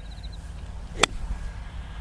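A five iron striking a golf ball on a short half swing: one sharp click about a second in.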